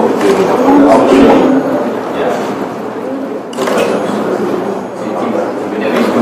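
Indistinct voices of several people talking in a room, with no clear words.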